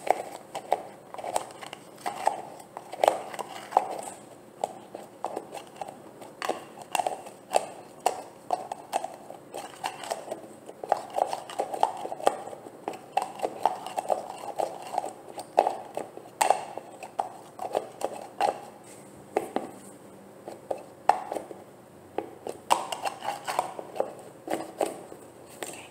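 Fingers and nails tapping quickly and irregularly on a plastic jar of olive oil hair gel, several taps a second.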